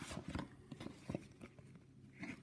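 Light handling noise from a notebook: a few faint taps and rustles of fingers on the cover and pages, mostly in the first second or so.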